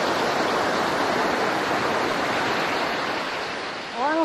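Sea surf breaking and washing up a beach: a steady rushing wash of foam that eases off slightly near the end.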